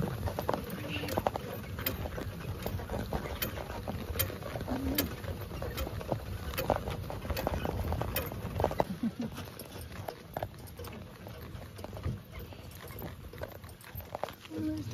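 Horse-drawn cart moving across grass: the horse's hooves on turf, with the metal fittings of the harness and cart clinking and rattling in irregular sharp clicks over a low rumble.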